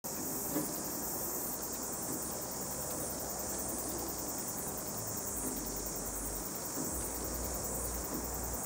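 Insects chirring in a steady high-pitched trill that swells and fades slightly, with a low rumble coming in about five seconds in.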